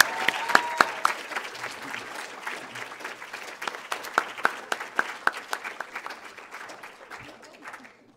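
Audience applauding, a room full of people clapping, loudest at first and dying away over the last couple of seconds.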